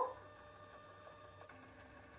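Moonlite NiteCrawler focuser/rotator's motors driving to their home positions during recalibration: a faint steady whine with a couple of light ticks.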